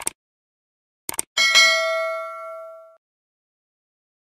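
A few short clicks, then a single bell-like ding with several ringing tones that fades out over about a second and a half.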